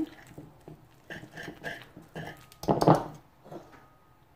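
Wire balloon whisk working a thick flour-and-egg batter in a clay bowl: soft, irregular strokes, with one louder clatter near three seconds in.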